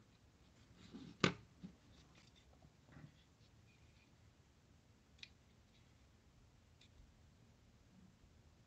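Faint handling of a small scale model in the fingers: a few light clicks and taps, the sharpest a little over a second in.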